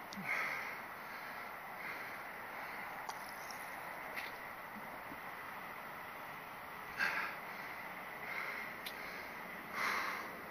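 A rider catching his breath close to a helmet-mounted microphone: three short, loud exhales or snorts through the nose, near the start, about seven seconds in and at the end, over a faint steady hiss.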